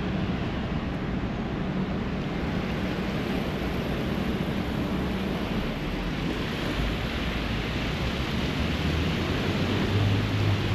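Steady city traffic noise, an even wash of sound with a low engine hum beneath it.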